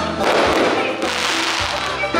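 Stage backing music with a dense, continuous crackle of a string of firecrackers over it, fading near the end.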